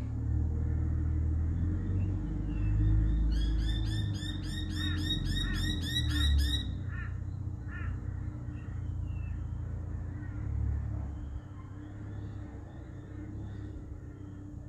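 A bird calling a quick run of about a dozen repeated, arching notes, about four a second, over a steady low rumble; a few faint chirps follow later.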